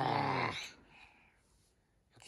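A toddler making a low-pitched, wordless vocal sound: a single burst under a second long at the start.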